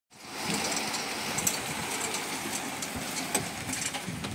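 Fly ash brick plant machinery running steadily, a mechanical noise with a few sharp clicks and rattles.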